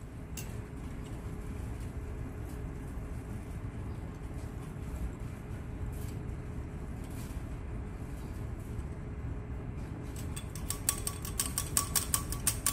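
Steady low hum of the lab while the lower water layer drains from a glass separatory funnel. Near the end comes a rapid run of light ticks at the funnel's stopcock and outlet.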